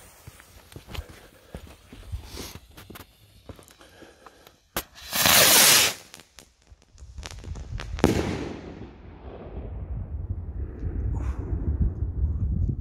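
Salute rocket with a silver-crackling tail: the fuse fizzes and crackles, the rocket goes up with a loud rushing hiss about five seconds in, and about eight seconds in its titanium flash report goes off with a sharp bang, followed by a long rolling rumble and scattered crackles.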